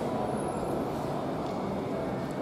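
Steady background din of a large airport terminal hall: an even rumble and hiss with a few faint clicks.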